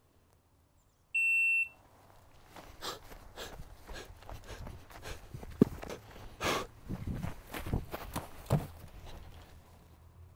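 A competition shot timer gives one short, high start beep about a second in. Then come footsteps, rustling and irregular knocks and clunks as a shooter hurries to a table and sets a precision rifle down on it.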